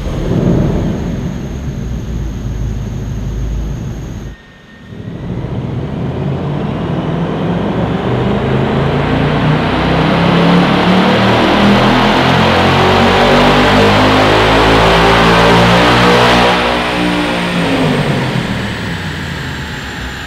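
Ford Mustang Dark Horse's Gen 4 Coyote 5.0 L V8, fitted with twin 90 mm throttle bodies, running on a chassis dyno. It runs for about four seconds, dips briefly, then makes a long full-throttle pull with the pitch climbing steadily to a peak about sixteen seconds in, and falls away as it comes off the throttle. A high whine rises along with it.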